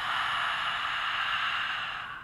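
A woman's long, steady exhale out through the open mouth, a breathy whispered "ha" as in lion's-breath pranayama, fading away near the end.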